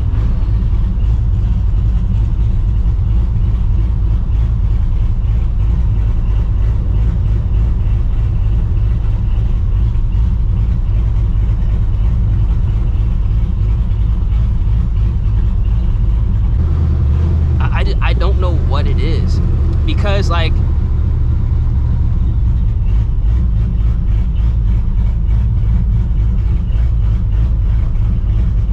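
Cammed, Procharger-supercharged 5.4-litre two-valve V8 of a 1999 Mustang GT idling and creeping at low speed with a steady, deep rumble.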